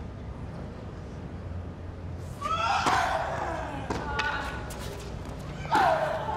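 A tennis rally in a hushed stadium: racket strikes on the ball a little over two seconds in and then about a second apart, each hit met with a player's loud grunting cry.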